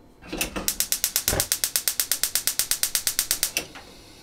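Gas hob's spark igniter clicking rapidly as the burner under a saucepan of water is lit, about ten sharp clicks a second for roughly three seconds, stopping shortly before the end.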